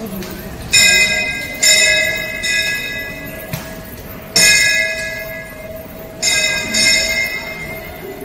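Metal temple bell struck about five times at uneven intervals, each stroke ringing out and fading before the next.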